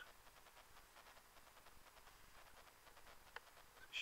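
Near silence: faint room tone, with one short faint click near the end.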